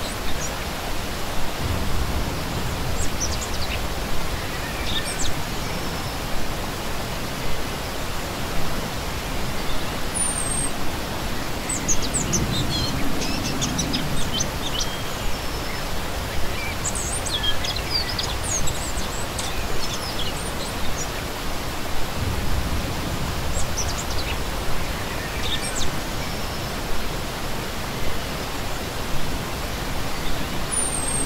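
A shallow rocky stream running over stones with a steady rush of water. Small songbirds chirp in short bursts over it several times.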